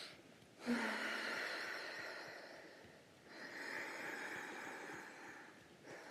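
Deep breathing in and out through the nose close to a microphone, as in a guided relaxation exercise: two long, soft breaths with a short pause about three seconds in.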